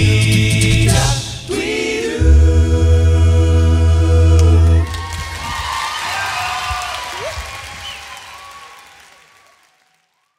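Male a cappella group holding a final chord over a deep vocal bass, cutting off together about five seconds in. Audience applause and cheering follow, fading out near the end.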